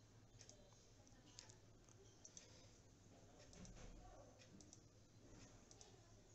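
Near silence with a few faint computer mouse clicks at irregular moments.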